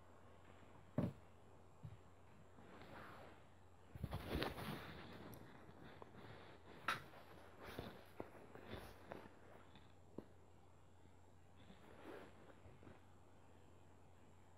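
Faint handling sounds of a watchmaker's screwdriver and fingers working on a small watch movement while the dial screws are undone: a few sharp little clicks and a brief rustle, over a steady low hum.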